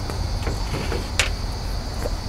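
Outdoor ambience: a steady low rumble and a steady high drone of insects, with a single short click about a second in.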